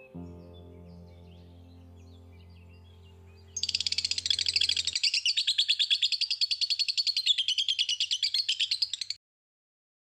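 A bird's rapid, high-pitched trilling chirps, starting about a third of the way in and cutting off abruptly near the end. Under the first half, a held musical chord fades out.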